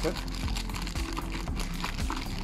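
Foil inner packet crinkling as it is handled and lifted out of a cardboard biscuit box, a run of quick crackles, over background music with held notes.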